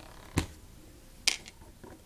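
Two sharp clicks of plastic LEGO bricks being handled, one about half a second in and a lighter, higher one about a second later.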